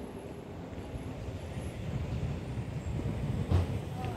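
Street traffic: a vehicle's low rumble growing louder as it approaches along the road, with a short thump about three and a half seconds in.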